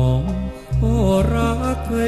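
A male vocalist sings a slow Thai luk krung ballad over instrumental accompaniment, with a short break between phrases about half a second in.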